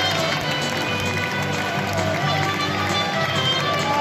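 Music carrying over the steady din of a football stadium crowd.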